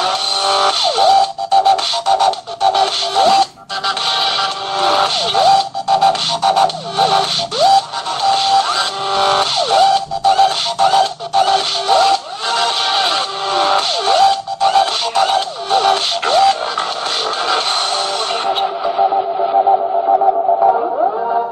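Electronic music with sustained synth tones and sliding notes, broken by short rhythmic cuts.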